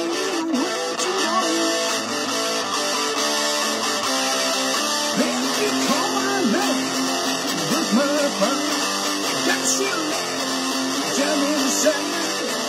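Electric guitar playing a WWE wrestler's entrance theme, with continuous riffing and note bends throughout.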